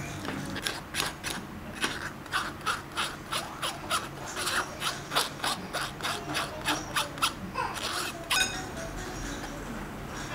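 A metal spoon scraping and pressing cooked rice porridge through a fine stainless-steel mesh sieve: rhythmic rasping strokes, about three a second, stopping about eight seconds in.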